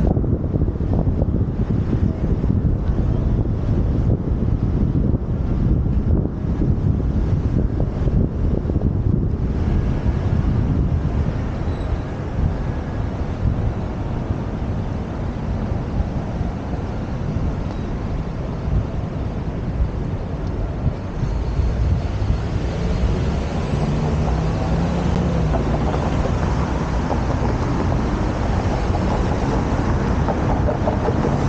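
Steady wind noise rumbling on a helmet-mounted camera microphone, over city street traffic. The noise grows brighter and louder in the upper range in the second half, with a faint low engine hum among it.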